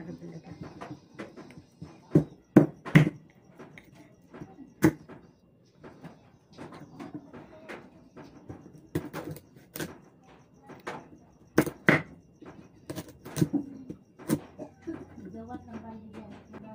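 Small knife cutting firm root crops into cubes on a wooden chopping board, the blade striking the board in irregular sharp knocks, a few every couple of seconds.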